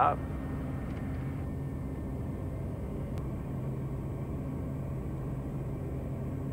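Piper Meridian's Pratt & Whitney PT6A turboprop engine and propeller at takeoff power, a steady drone with an even low hum, as the aircraft rotates and climbs away from the runway.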